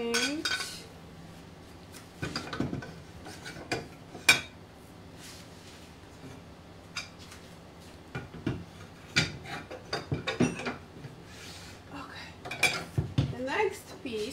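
Glazed Polish stoneware plates and dishes clinking and knocking against each other and on wooden shelves as they are lifted and set in place. The clatters come in scattered clusters, the sharpest about four seconds in.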